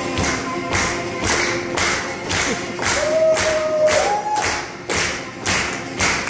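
Live acoustic blues played on an amplified acoustic guitar over a steady thumping beat, about two and a half beats a second. A long held note sounds about halfway through and steps up in pitch near its end.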